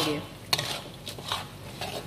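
Metal spatula stirring and scraping thick chilli sambal and fried anchovies around a metal wok, with a sharp scrape about half a second in and another just past a second.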